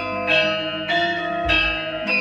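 Javanese gamelan ensemble playing: bronze metallophones and gong-chimes struck in a steady pulse of about one stroke every 0.6 s, their notes ringing on over each other, with a deep low stroke about one and a half seconds in.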